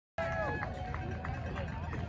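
Silence, then outdoor ambience cuts in suddenly: distant voices calling over a low, steady rumble.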